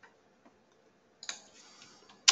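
A few faint clicks of a computer keyboard: a light tap at the start, another about half a second in, and a sharper click a little past a second in.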